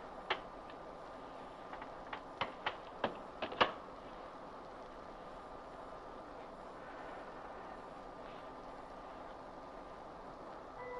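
Switches on a radio console clicked: one click, then a quick run of about seven more, over a steady electronic hum with a faint held tone.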